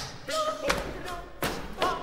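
About four sharp knocks, roughly evenly spaced, with brief pitched sounds between them: percussive playing in a contemporary music-theatre piece built on everyday objects.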